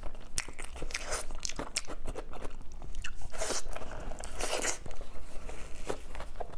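Close-miked biting and chewing of braised pork trotter: a rapid run of clicks and smacks, with two longer noisy mouth sounds around the middle.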